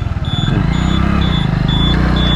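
Small motorbike engine running under way, its pitch rising in the first second and then holding. A short, high electronic beep repeats about twice a second over it.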